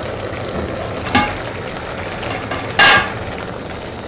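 Aluminium pot lid knocking against the pot and utensils as it is lifted off and set aside: a short metallic knock a little over a second in and a louder ringing clang near three seconds. A steady hiss of boiling macaroni water runs underneath.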